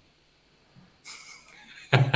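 A man laughing: a breathy exhale about a second in, then loud, pulsing laughter near the end.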